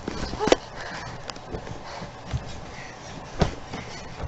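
Scattered knocks and light rustling from people moving about close to the microphone, with a brief voice sound about half a second in. The loudest knock comes near the end.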